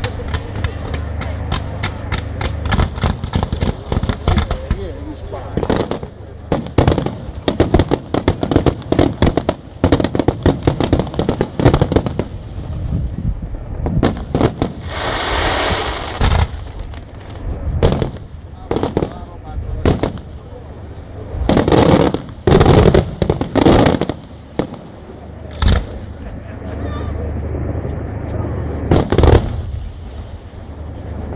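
Italian aerial firework shells (bombe da tiro) bursting in a long series of sharp bangs, in rapid runs with a few gaps between them. A hissing rush comes about halfway through, and loud bangs return near the end.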